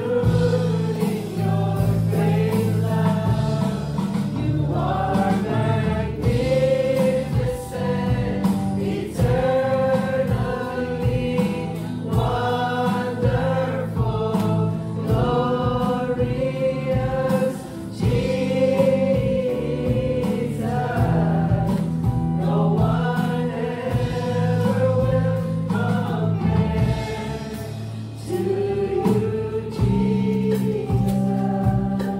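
A live church worship band plays a contemporary praise song. Several singers sing together with microphones, backed by keyboard, acoustic and electric guitar and drums, in long held lines.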